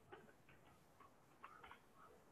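A few faint computer keyboard key clicks, scattered over two seconds against near silence, as a formula is typed in and entered.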